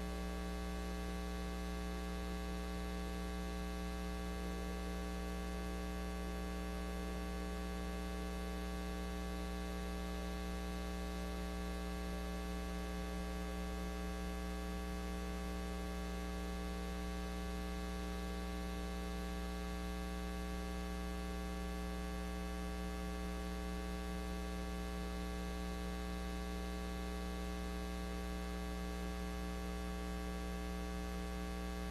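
Steady electrical mains hum in the recording, a low buzz with a ladder of higher overtones that never changes in pitch or level.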